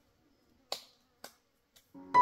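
Two sharp knocks about half a second apart, with a fainter third one near the end: a hand tool striking as someone digs for tubers.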